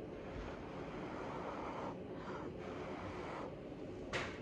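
A person blowing by mouth onto wet pour paint, a breathy rush of air pushing the paint out across the canvas: one long blow, then two shorter ones near the end.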